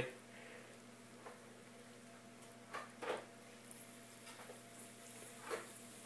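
Quiet, with a few soft taps and plops as thick waffle batter is poured from a plastic bowl onto the waffle maker's plate, over a faint steady hum.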